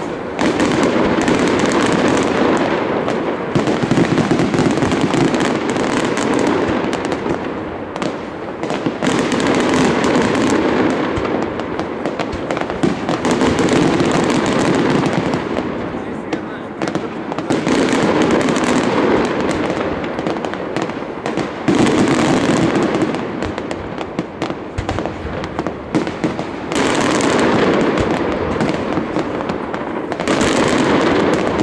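Aerial fireworks display: a dense, continuous run of shell bangs and crackling, swelling and easing in waves every few seconds.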